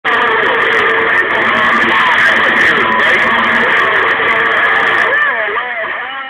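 CB radio receiving distant stations: heavy static with garbled voices talking over one another and a few steady whistling tones. About five seconds in the hiss drops away and one voice comes through more clearly.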